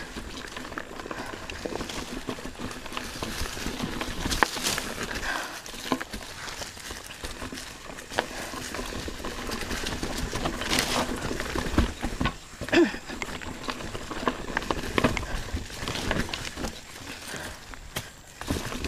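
Mountain bike ridden over rocky, rooty singletrack: tyres rolling over dirt and leaves with irregular clatters and knocks as the bike bounces over rocks.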